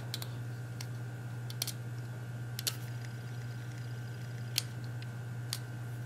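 A few faint, scattered clicks and scrapes from a small drill bit being turned by hand in a Bic lighter's plastic top, over a steady low hum.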